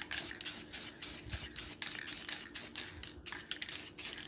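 Aerosol spray paint can giving short hissing bursts, about four a second, as a plastic car interior trim piece is sprayed black. A faint steady low hum sits underneath.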